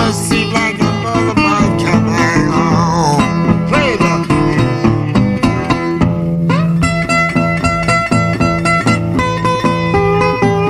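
Delta blues slide guitar on a metal-bodied resonator guitar, played as an instrumental break over a steady thumbed bass. In the first half the slide glides and wavers between notes; from about two-thirds of the way in, it settles into repeated higher notes.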